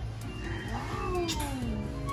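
A person's voice making a drawn-out exclamation. It rises briefly, then slides down a long way in pitch, over background music.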